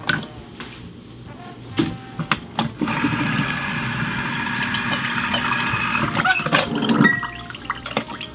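A lime half being squeezed in a stainless-steel lever citrus press: a few sharp clacks of the press, then a steady trickle of juice running into a glass for about three and a half seconds, and more clicks near the end.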